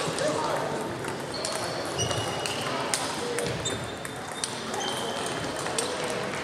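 Table tennis balls clicking off bats and tables at several tables at once, an irregular stream of light clicks over a murmur of voices in a large sports hall.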